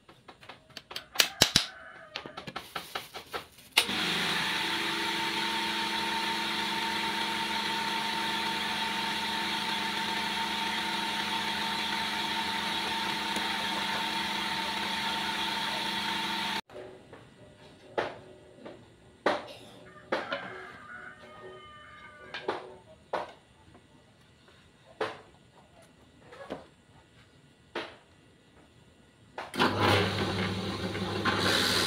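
A drill press motor runs steadily with a constant hum and whine for about thirteen seconds, starting about four seconds in and cutting off suddenly. Scattered knocks and clicks of wooden pieces being handled on the bench come before and after it.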